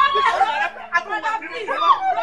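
Several people's voices overlapping in a heated argument.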